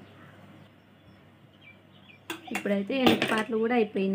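Quiet room tone for about two seconds, then a woman's voice speaking.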